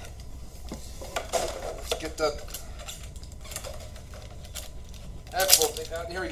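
Plastic packaging and a headset being handled: scattered clicks, taps and rattles, with a louder clatter near the end.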